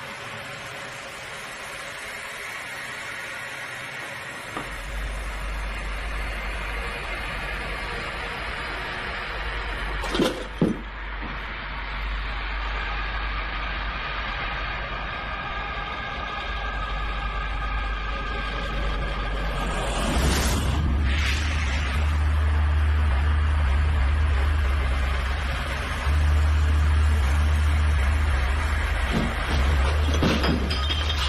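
Horror film score: a low droning rumble that comes in a few seconds in and builds, deepening around twenty seconds in, with sharp stinger hits about ten seconds in and again near twenty.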